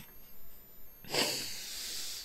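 A man's long audible breath out, starting about a second in, just before he laughs.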